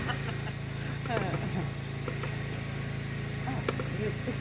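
A steady low engine-like hum of a motor running, with faint laughter about a second in and a single click near the end.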